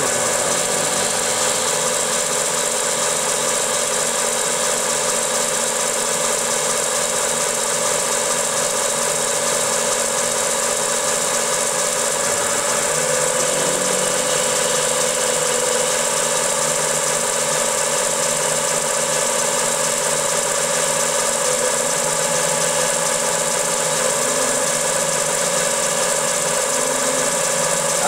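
X2 mini milling machine running under CNC, its end mill cutting an aluminum part that is spun by a servo-driven 4th axis. The sound is a steady machine whine made of several held tones, and one of them grows stronger for a few seconds about halfway through.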